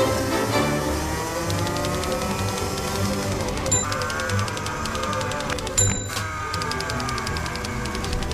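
Racing kart engines revving, the pitch rising and falling as the karts accelerate and back off, heard from onboard. The sound breaks off abruptly a couple of times where shots change.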